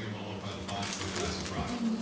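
Steady low hum with faint scattered clicks and rustles of small-object handling.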